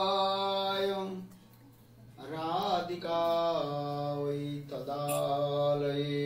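A man's voice chanting a devotional mantra in long, sustained notes. A held note ends about a second in, and after a short pause a wavering phrase settles into another long note on a lower pitch.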